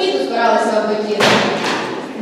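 A straw broom with a wooden handle dropped onto the stage floor: a loud thud a little over a second in, followed by a smaller knock as it settles.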